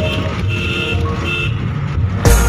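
Steady road rumble from inside a moving vehicle crossing a steel bridge, with short bursts of a high-pitched tone recurring a few times over it.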